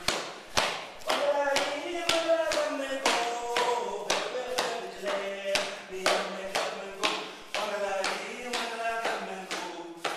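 Aboriginal dance song: a man's voice chanting over sharp, even clapstick beats, about two a second, with a steady low drone underneath.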